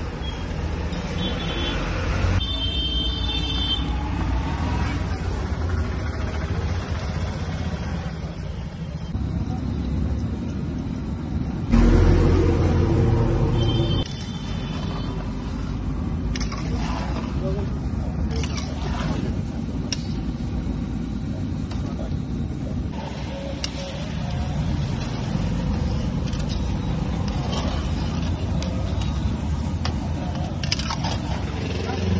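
Busy street ambience of traffic and people's voices. About twelve seconds in, a louder, lower vehicle sound lasts about two seconds.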